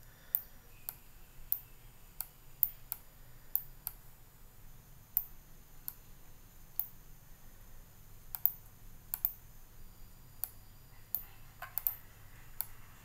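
Irregular, sharp clicks of a computer mouse, some in quick pairs and a cluster near the end, over a faint low hum.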